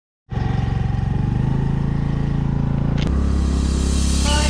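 Honda scooter's single-cylinder engine running steadily, starting abruptly just after the opening, until a click about three seconds in, where background music takes over.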